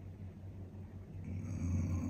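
A steady low hum. In the second half a person's breath rises over it, loudest near the end.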